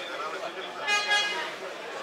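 A horn sounds once, briefly, about a second in, over the chatter of a crowd in a hall.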